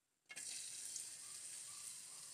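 Sliced onion sizzling in hot cooking oil in a pan: the sizzle starts suddenly just after the start, then carries on as a steady hiss.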